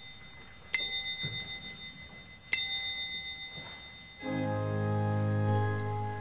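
A small brass hand bell is struck twice, about two seconds apart, and each ring dies away slowly. About four seconds in, a pipe organ chord comes in and holds.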